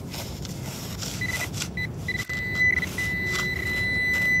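Garrett Pro-Pointer pinpointer sounding as it is probed through sandy gravel. It gives a few short high beeps about a second in, which quicken into a near-continuous steady tone over the last second as it homes in on a buried target. Its tip scrapes through the sand and gravel throughout.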